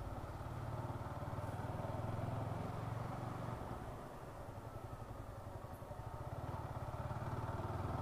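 Yamaha R15 V4's single-cylinder engine running at low speed while the bike is ridden down a narrow lane. The engine level dips slightly about halfway through, then slowly rises again toward the end.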